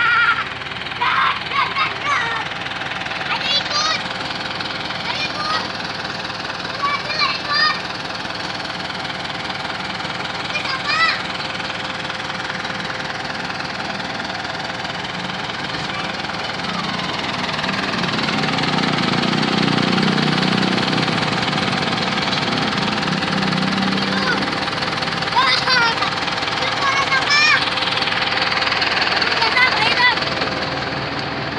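An engine idling steadily, its hum swelling louder for several seconds past the middle, with short high-pitched children's voices now and then.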